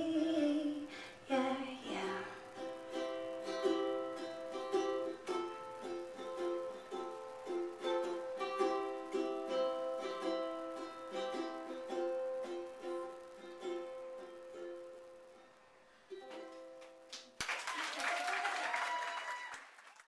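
Instrumental outro of a live acoustic song: picked notes on a plucked string instrument ring out and fade away, then a last strum. Near the end a short burst of audience applause.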